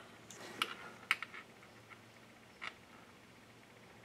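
A few faint, short clicks and ticks of handling as gloved hands turn a small fan motor's stator and windings with the thermal overload's leads. There is one click about half a second in, two close together about a second in, and one more near three seconds, with near silence between them.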